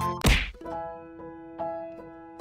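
A single loud thud sound effect about a quarter second in, over background music; the music breaks off at the thud and goes on as a quieter, slower tune.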